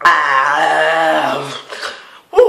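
A young man's loud, drawn-out groaning cry with mouth wide open and tongue out, holding about a second and a half before tailing off: a reaction to the burn of a mouthful of ground cinnamon.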